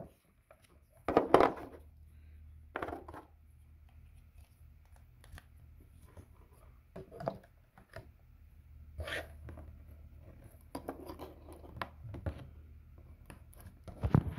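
Scattered clicks, scrapes and rubs of phone chargers and cables being handled on a table, with the loudest knocks about a second in and near the nine-second mark. A faint steady low hum runs under most of it.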